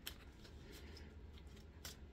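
Faint rustling and a few soft ticks of cards being handled, over a low steady room hum.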